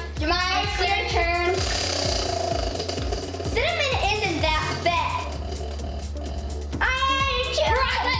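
Background pop music with a sung vocal over a steady thumping beat.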